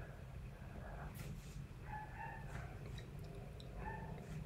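Quiet pause with faint room tone, and a faint, short pitched call about two seconds in, with another brief one near the end.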